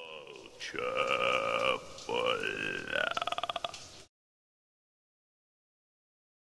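A woman's voice making an ugly, gurgling "chuuurple" sound three times in imitation of churning flood water, the last one breaking into a rapid flutter. It cuts off to dead silence about four seconds in.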